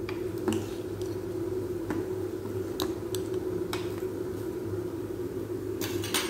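A steel ladle clicking sharply against a stainless steel pot about eight times, spread unevenly, over a steady low hum.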